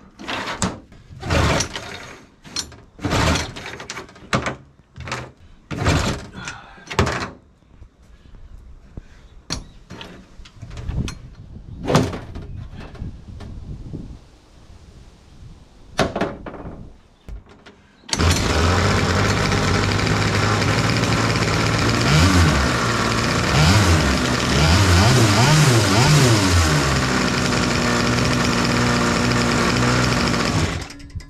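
A string of sharp knocks and clatters, then about 18 s in the jetboard's small two-stroke engine starts and runs loud, revving up and down several times before settling to a steadier speed.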